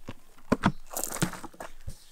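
A hard-sided camping cooler being opened: its rubber latches pulled free and the lid lifted, with four or five sharp clacks and knocks and some rustling between them.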